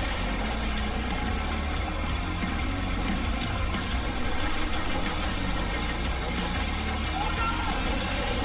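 Closing sound design of a music video after the song ends: a heavy, steady low rumble under a dense wash of noise.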